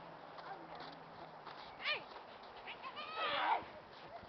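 A young child's high-pitched vocal squeals: a short rising-and-falling squeal about two seconds in, then a longer, louder burst of squealing near the end.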